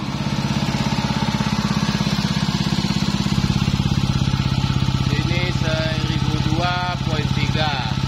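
A pump running steadily with a rapid, even pulse, pushing liquid through a flowmeter under calibration.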